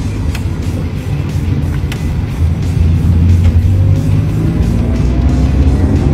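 Manual-transmission car engine heard from inside the cabin, pulling in second gear on the flat, its revs climbing steadily toward 2,000 rpm, the point where the next gear goes in. It grows louder about halfway through, with a rising whine near the end. Background music plays along with it.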